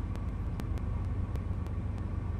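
Steady low background hum with a faint higher steady tone and a few faint ticks.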